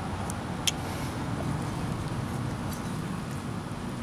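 Two short, sharp clicks in the first second as a carving knife cuts into the wood, over a steady low rumble.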